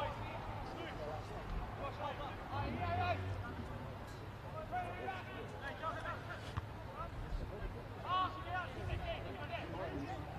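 Faint, scattered voices of players calling out across an outdoor football pitch, over steady open-air background noise, with a couple of louder shouts around three seconds in and near the end.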